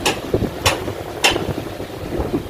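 A ship's engine runs with a low rumble, and three sharp clicks come evenly spaced about two-thirds of a second apart.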